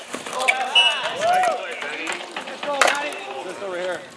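Ball hockey players shouting and calling out, with sharp clacks of sticks on the ball and the plastic court during a scramble at the net. The loudest crack comes near three seconds in.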